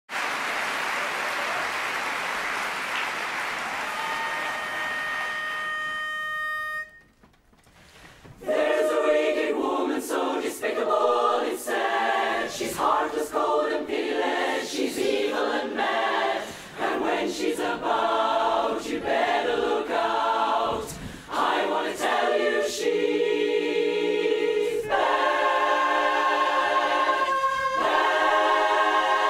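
Audience applause, with one steady pitch-pipe note sounding over it about four seconds in. After a brief hush, a women's barbershop chorus begins singing a cappella in close harmony, first in short detached chords broken by pauses, then in longer held chords near the end.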